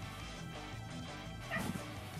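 Background music plays throughout, with a short cat cry about one and a half seconds in as two cats play-fight.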